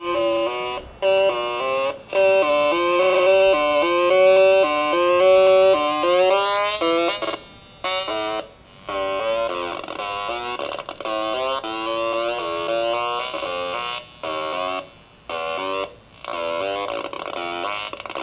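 Atari Punk Console, a two-555-timer square-wave tone generator driven by a four-step sequencer, playing a buzzy tone that starts suddenly and steps up and down between pitches several times a second in a repeating pattern. The sound cuts out briefly several times.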